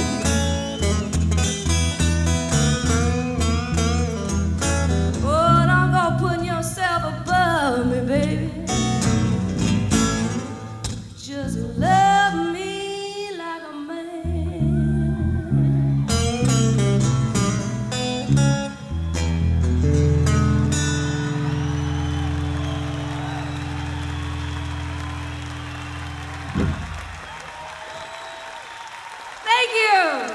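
Live blues band with guitar and electric bass playing out the end of a slow song, the lead line gliding up and down between notes. It ends on a long held final chord that stops about 26 seconds in. The audience applauds over the last chord and after it.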